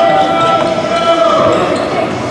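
Basketballs bouncing on a hardwood gym floor, with indistinct voices and a held musical tone underneath that fades about a second and a half in.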